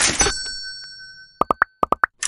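Animated end-card sound effects: a burst with a bright chime whose tones ring on and fade over about a second and a half, then a quick run of five short pops near the end, the click sounds of the like and subscribe buttons being pressed.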